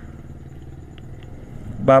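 A low, steady background hum in a pause between spoken phrases, with two faint clicks about a second in. A man's voice starts again near the end.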